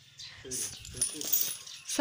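Ice cubes clinking and rattling in a plastic cup, a scattered run of small hard clicks that is loudest about halfway through.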